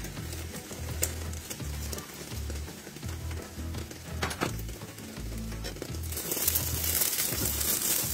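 Omelette sizzling in a frying pan over background music with a steady bass beat. The sizzle grows louder from about six seconds in, with a couple of light knocks earlier on.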